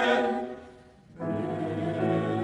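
Mixed choir singing: a held chord fades away within the first second, and after a short gap the choir comes in again on a new sustained chord, with the low voices strong.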